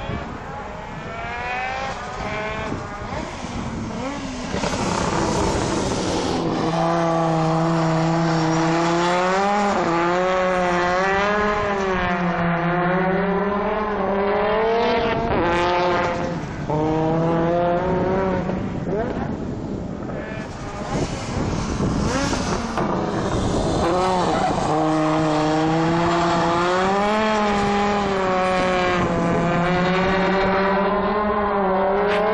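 Audi Sport Quattro E2's turbocharged five-cylinder engine running hard as the car is driven around the track, its note rising and falling with the throttle. The note drops away briefly three times in the second half.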